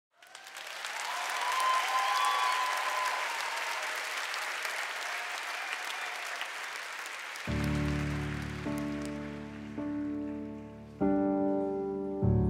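Arena crowd applauding and cheering, swelling in the first seconds and then fading. About seven and a half seconds in, a stage keyboard starts playing slow, sustained piano chords, changing about once a second.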